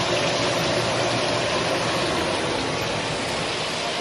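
Hot oil sizzling steadily in a pan while a batch of fried mushrooms cooks.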